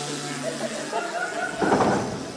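A man making a loud, raspy, noisy vocal sound into a handheld microphone, mimicking a small child's attempt at beatboxing. It is loudest in a burst near the end, with audience chuckles mixed in.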